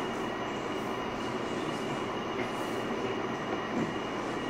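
Steady room tone: an even hiss with a faint, steady high whine and no distinct events.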